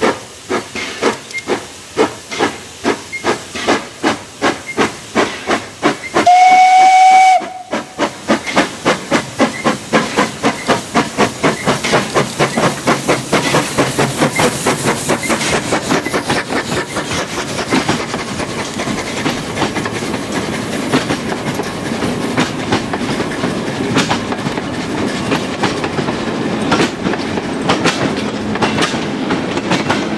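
Steam locomotive working a train: regular exhaust chuffs about two a second, a short loud whistle blast about six seconds in, then the chuffs quicken to about three a second as it accelerates past. The chuffing gives way to the steady rolling of the coaches with rhythmic wheel clicks over rail joints.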